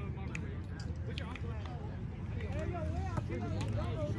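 Faint voices of several people talking and calling out in the background, with a few short, sharp knocks.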